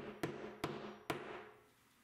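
Stanley 16 oz fiberglass curved-claw hammer tapping a wall anchor into the wall: four quick, light taps over the first second or so, spaced unevenly.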